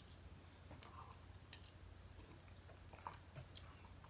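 Near silence: a low steady hum with a few faint small clicks and mouth noises as pills are tossed into the mouth, the sharpest click about three seconds in.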